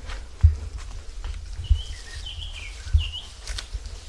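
Footsteps on a leaf-strewn forest path, with a low thud about every second and a quarter and a light rustle between. A bird chirps a few times around the middle.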